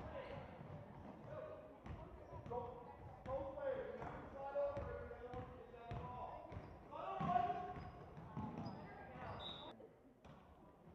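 Basketball dribbled on a hardwood gym floor, with scattered sharp bounces, under the shouts and chatter of players, coaches and spectators echoing around the gymnasium.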